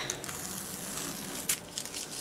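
Tape being peeled back from the edge of a diamond-painting canvas: faint crinkling and rustling of tape and canvas on the table, with a sharper crackle about one and a half seconds in.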